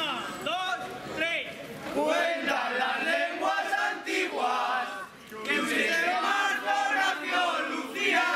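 A group of young men singing loudly together in unison, a rowdy shouted street song of many voices, with a short break about five seconds in.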